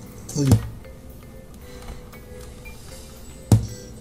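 Two sharp clicks about three seconds apart, played back from a recording through computer speakers: the USB condenser microphone's on/off switch being turned off and then back on, with only a low steady hum in between while the mic is off.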